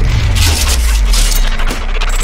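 Music and sound effects of an animated logo intro: a deep boom with a sustained low rumble, and bright, glassy shattering and crashing over it for about the first second and a half.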